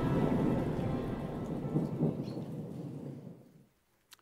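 Rolling thunder with rain, fading out steadily and gone about three and a half seconds in.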